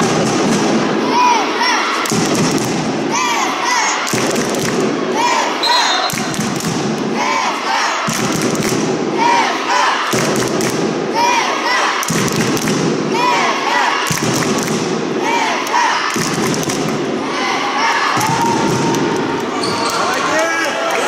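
Supporters chanting to a steadily beaten drum, a new phrase about every two seconds, echoing in a sports hall.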